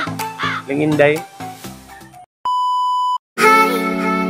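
A single steady electronic beep, one pure high-pitched tone lasting under a second, set between cuts of silence about halfway through. Before it, voices talk over background music; just after it, a sustained music chord starts suddenly and is the loudest sound.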